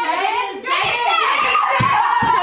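Excited voices calling out overlapping guesses and exclaiming, with a few low thumps near the end.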